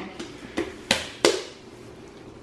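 Hands slapping and patting slime against a tile floor: three sharp wet slaps about a third of a second apart, then quieter squishing.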